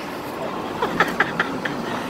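Road and tyre noise of a truck driving, heard from inside the cab as a steady rushing that builds slightly, with a few faint short ticks around the middle.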